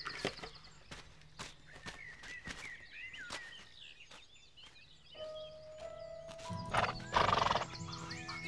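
A horse's hooves knocking irregularly on the ground, then a short loud horse call, a neigh or snort, about seven seconds in. Soft background music with long held notes comes in over the second half.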